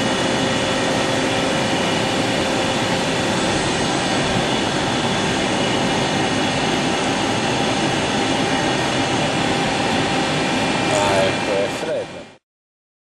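DMG Gildemeister Twin 65 CNC lathe running: a steady mechanical whir and hiss with several high, steady whines.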